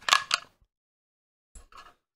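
Short clicks and rustling of hands handling a small black plastic project box: a sharp burst right at the start, then silence, then a few faint clicks near the end.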